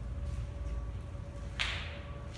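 A single short gritty scuff about a second and a half in, like a footstep scraping on a debris-strewn concrete floor, over a low steady rumble.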